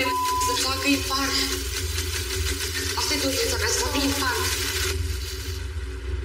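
Voices talking over a steady low background music drone, growing quieter near the end.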